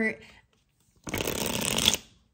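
A tarot deck being shuffled in a quick riffle that lasts about a second and stops abruptly near the end.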